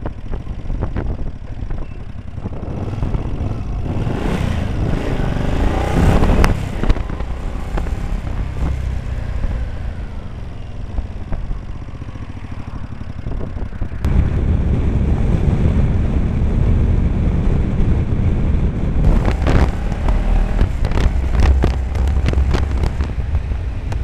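Honda CX500 V-twin motorcycle engine running under way, picked up by a tiny mini DV camera's built-in microphone along with wind rumble; the engine pitch rises as the bike accelerates a few seconds in and again near the end. About halfway through, the sound jumps abruptly to a louder, deeper wind rumble.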